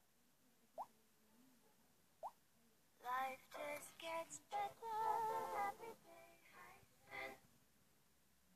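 Hisense U972 smartphone playing its short synthesized power-off melody, a run of tones lasting about four seconds. It is preceded by two brief blips about a second and a half apart.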